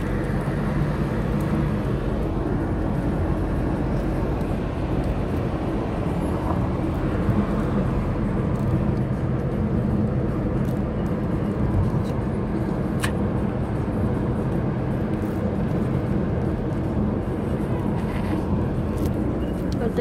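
Steady road noise inside a moving car's cabin: low engine hum and tyre rumble. There is a single short click about two-thirds of the way through.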